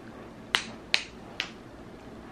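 Three sharp clicks, a little under half a second apart, as the magnetic fasteners of a Welpie baby romper snap shut.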